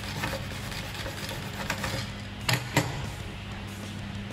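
Quiet background music, with two sharp knocks about two and a half seconds in, a hard metal tool set down on a wooden bench while a sanding pad is being creased by hand.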